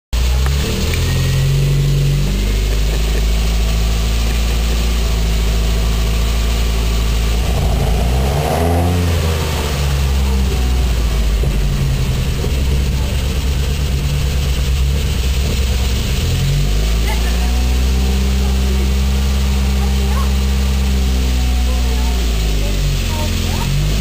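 Four-cylinder engine of a 1978 Mitsubishi Celeste 1600, fed by twin Dellorto dual-barrel carburettors and breathing through an open exhaust with a Remus muffler, idling with a brief rev that rises and falls about eight seconds in.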